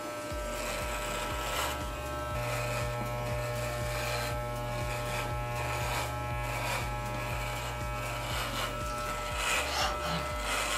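Corded electric hair clippers buzzing steadily as they cut through a long, thick beard.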